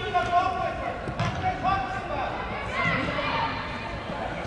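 Raised voices calling out during an indoor soccer game, echoing in a large hall, with a sharp knock about a second in.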